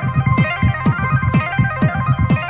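House music from a continuous DJ mix: a steady kick drum at about two beats a second, with short high percussion hits at the same spacing and a high synth melody of short stepping notes.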